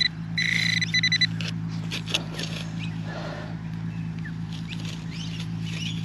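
Metal detector pinpointer sounding its buzzing alert tone as it picks up a target in a muddy dig hole, first steady, then breaking into rapid pulses and stopping about a second in. After it comes faint scraping and clicking as the probe and hand work the wet soil, over a steady low hum.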